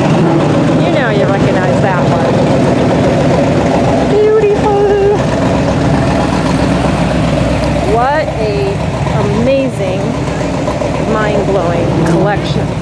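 Voices of people talking close by, over a steady low drone.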